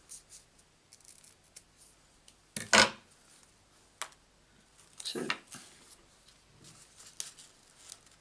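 Craft handling sounds as satin ribbon and double-sided tape are worked by hand: scattered light rustles and clicks, with a short sharp snip-like scrape about three seconds in, the loudest sound, and another just after five seconds.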